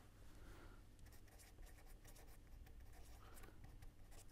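Faint scratching of a pen writing on paper, a steady run of short quick strokes.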